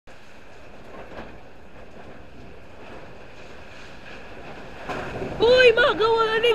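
A steady, even hiss of background noise with no distinct events, then a person's voice breaks in near the end with a drawn-out "hi".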